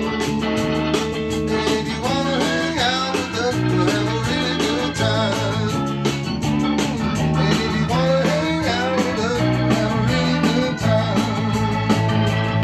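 Blues band playing live: electric guitar lead with bent notes over electric bass and organ.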